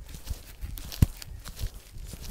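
Scuffing and low thuds as a person strains to push a heavy tree stump across soil and mulch, with one sharp knock about a second in.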